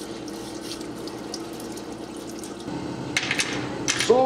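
Solvent parts washer running: a steady stream of solvent pours from its nozzle and splashes over a small metal brake master cylinder into the tank, with a faint steady pump hum underneath. A couple of sharp clicks near the end.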